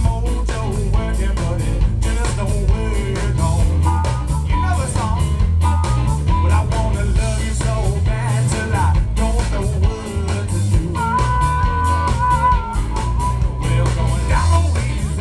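Live blues band playing: electric guitar and drums with a steady beat, and a man singing the lead vocal.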